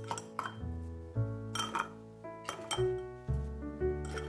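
Frozen Thai tea ice cubes and a metal spoon clinking against a drinking glass as the cubes are dropped in, in a few separate clinks. Gentle piano background music plays throughout.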